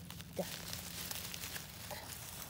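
Dry leaf litter and twigs rustling and crinkling as a gloved hand grips a red-capped bolete and pulls it up from the forest floor.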